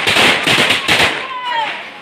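Firecrackers going off on the ground in a rapid, dense run of cracks that stops about a second in.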